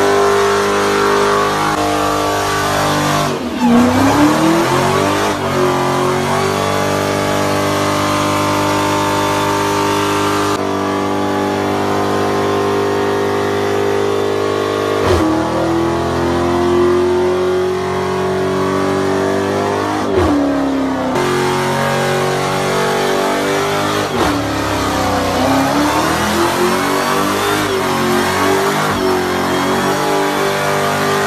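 Dodge Charger Hellcat's supercharged V8 held at high revs through a burnout, rear tyres spinning on the pavement. The revs drop sharply and climb back up about four times.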